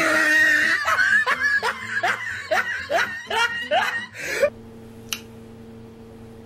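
A woman laughing in a quick run of short rising bursts, about three a second, that stops after about four seconds. A faint steady hum follows, with a single click.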